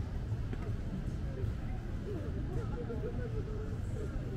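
People talking nearby in an open-air plaza, their voices faint and unclear over a steady low rumble.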